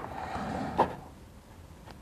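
A black plastic pry stick working under a phone battery, prying it up against stubborn adhesive: soft scraping with a small click just under a second in.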